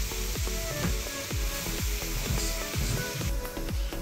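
Background music with a steady beat, over the sizzle of sliced mushrooms and onions frying in a Saladmaster stainless-steel electric skillet.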